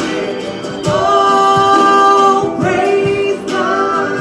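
Live Christian worship song: a woman singing into a microphone with a man playing acoustic guitar, the voices holding long notes, the longest from about a second in to about two and a half seconds.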